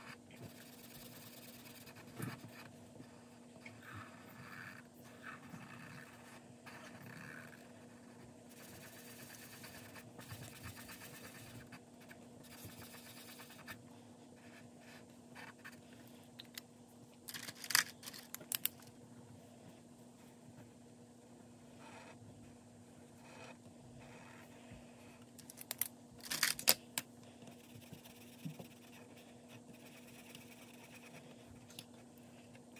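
Permanent marker scratching softly across paper in short colouring strokes, filling in shapes on a paper sheet. Two short clusters of sharp clicks stand out, the loudest sounds, one a little past the middle and one near the end, over a faint steady low hum.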